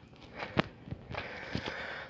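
Footsteps on gritty, sandy stone ground: a few soft steps, then scuffing in the second half.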